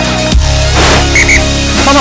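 Background electronic music with a steady bass line and a beat, with two short high tones about a second in.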